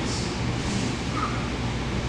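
Room tone in a large hall: a steady low hum under an even hiss.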